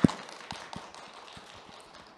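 A sharp click, then audience applause dying away: scattered claps in a hall, fading out over two seconds.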